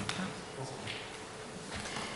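Quiet room tone: a faint steady hum over a low hiss, with a soft click at the very start.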